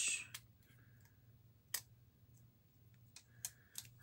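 Small scissors snipping through a translucent sticker sheet: a brief rustle at the start, then a few sharp, separate clicks of the blades a second or more apart. The blades are gummed with black residue.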